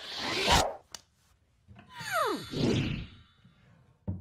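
Cartoon-style whoosh sound effects as the picture card flies into the bag: a whoosh that swells over the first half-second, a short click, then a second whoosh with a falling whistle-like glide.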